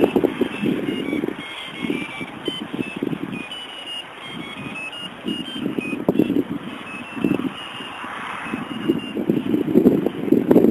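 Irregular rustling and knocks from movement and handling in dense brambles, with a scattered run of short, high, thin notes at changing pitches in the background.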